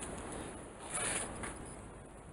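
Soft rustling of clothing as a person moves close past the microphone, with a brief louder swish about a second in.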